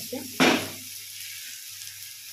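Potatoes and spice paste frying in oil in a pan while being stirred with a spatula. There is a loud sizzling scrape about half a second in, then a steady sizzle.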